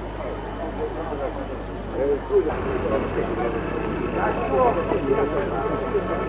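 Indistinct voices of people talking, with no words made out, over a steady low hum; a short bump a little over two seconds in.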